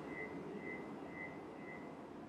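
Faint room tone with a faint high-pitched tone pulsing about twice a second.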